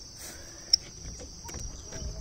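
Steady high-pitched insect chorus, with one short sharp tick about a third of the way in.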